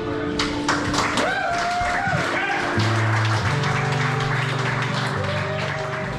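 Music: held notes with a gliding melody line, low bass notes coming in about three seconds in.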